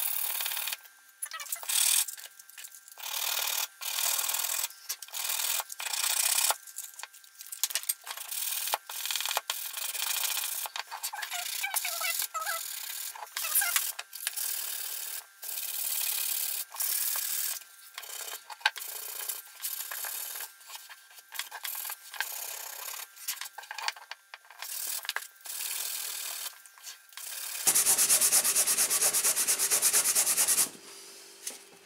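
Sandpaper rubbed back and forth by hand on a wooden acoustic guitar bridge, cleaning the gluing surface after the bridge lifted off. The strokes are uneven, with short pauses. Near the end comes a louder burst of rapid, short strokes.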